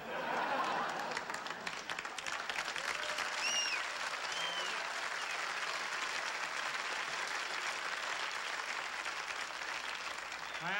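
Studio audience applauding, a dense burst of clapping that starts abruptly and carries on steadily, with a couple of short high cheers from the crowd a few seconds in.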